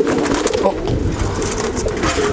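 Many caged fancy pigeons cooing at once in a dense, overlapping chorus. A low rumble swells through the middle, and a few faint clicks and rustles sit over it.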